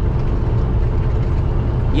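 Steady low rumble of a semi-truck's road and engine noise, heard inside the cab while cruising at highway speed.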